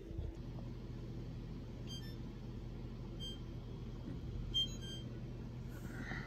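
A few short, high electronic beeps from a wall oven's control panel, about two, three and four and a half seconds in, over a steady low hum.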